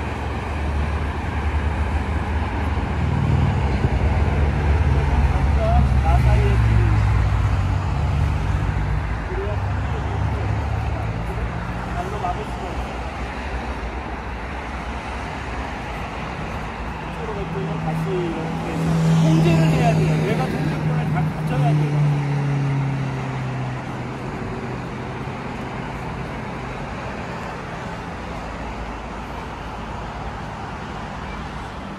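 Road traffic: motor vehicles passing, a low engine rumble that swells twice, first in the opening seconds and again about two-thirds of the way through.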